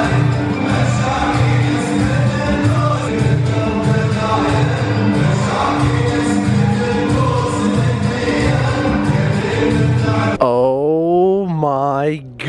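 Men's chorus chanting a traditional Emirati song in unison over a PA system, with a steady, evenly repeating beat beneath the voices. The sound cuts abruptly to something different shortly before the end.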